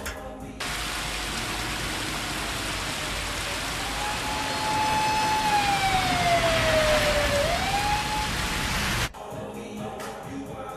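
Heavy rain pouring down on a street, a dense steady hiss. A police siren wails through it from about three and a half seconds in: it rises, holds, slowly falls, then sweeps back up before fading.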